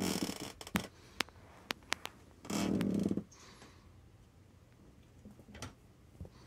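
A kitten at play with a fluffy wand toy on carpet: a scatter of small sharp taps and clicks, and two short rustling scrapes, one at the start and a louder one about halfway through.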